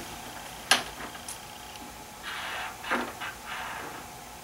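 A woman clearing her throat, with a sharp click about a second in and a few soft breathy sounds later.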